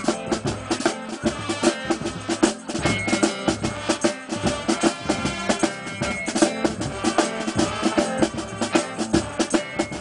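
Marching band playing: a drumline beating out a fast, steady rhythm with brass horns sounding over it.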